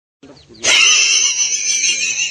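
A mouse giving one long, loud, high-pitched squeal that wavers in pitch, starting about half a second in: a defensive cry at a cat swiping at it.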